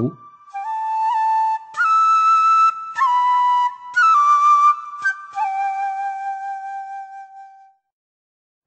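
Traditional Vietnamese flute playing a slow solo melody of held notes in short phrases. The last note is long and fades away near the end.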